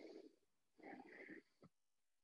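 Near silence, with faint breathing from a woman exercising: a soft breath at the start and another about a second in.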